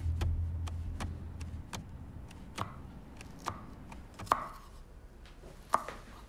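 Kitchen knife cutting vegetables on a wooden cutting board: a series of blade strikes on the board, quick at first, then more spaced out, with a few sharper knocks. A low car-cabin rumble fades out in the first second or two.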